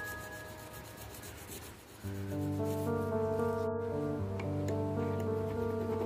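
A pointed steel tool rubbed back and forth on a sharpening stone, a dry scraping, heard mostly in the first two seconds. Background violin music comes in about two seconds in and is the loudest sound.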